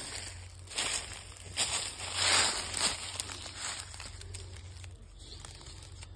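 Footsteps crunching through thick dry leaf litter, a step roughly every second, dying away after about four seconds.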